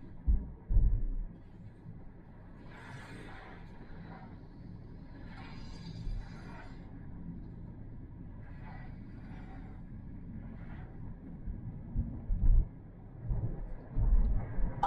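Road and tyre noise inside a moving car's cabin, a steady low rumble, with a few short low thumps near the start and again about twelve seconds in.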